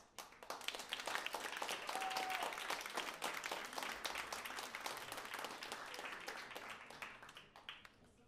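Small audience clapping. It starts right after the performer's closing words, peaks in the first seconds and dies away near the end.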